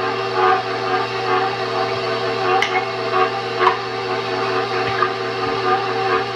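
Electric stand mixer running on low with its paddle attachment beating sausage into biscuit mix: a steady motor whine over a low hum, with a couple of light ticks.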